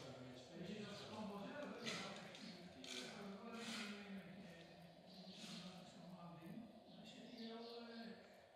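Faint, indistinct talking: quiet voices murmuring without clear words.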